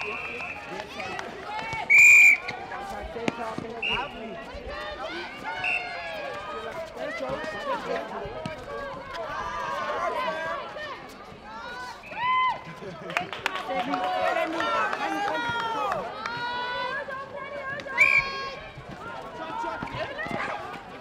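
Netball umpire's whistle giving short blasts, the loudest about two seconds in and another near the end, with smaller toots between. Players and spectators shout and call throughout.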